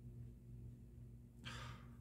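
Near silence with a faint steady hum, broken about a second and a half in by a man's short, breathy sigh.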